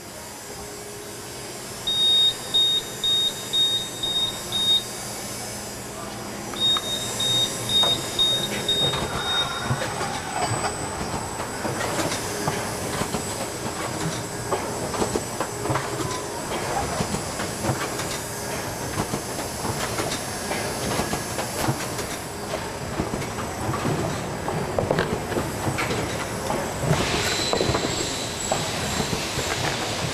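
Adco CTF-470V automatic hot-melt tray former starting up. A high-pitched beeper sounds in two runs of quick beeps, then the machine cycles with continuous rapid mechanical clatter.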